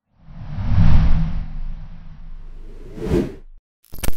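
Logo-intro whoosh sound effect: a noisy rush over a deep rumble that builds quickly, peaks about a second in and slowly fades, with a second short swell near the end before it cuts off.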